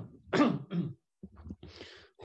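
A man coughing and clearing his throat in a few short bursts in the first second, then a breathy exhale near the end.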